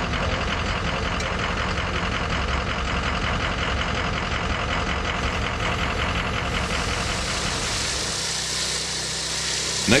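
An engine idling steadily with an even pulse. Its sound changes about seven to eight seconds in.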